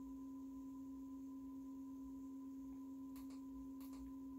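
A faint, steady low hum on one pure tone, with two or three faint clicks near the end.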